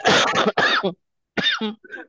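A person coughing: a loud, rough burst just under a second long in two pushes, then a short vocal sound.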